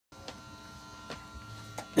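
Steady electrical buzz and hum from the band's amplified gear, idling with nothing being played, with a few faint clicks.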